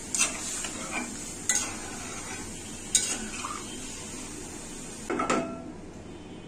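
A spatula clinking and scraping against a metal cooking pan as a simmering vegetable curry is stirred, about five separate knocks over a steady sizzling hiss. The hiss drops away near the end.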